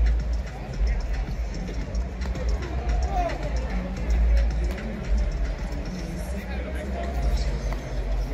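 Music over a ballpark's public-address system mixed with the chatter of nearby fans.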